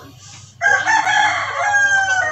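A rooster crowing: one long crow that starts abruptly about half a second in, its pitch sagging slightly toward the end.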